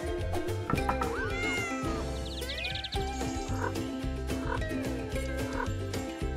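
Cat meow sound effects and gliding cartoon whistle effects over light background music with a repeating bass.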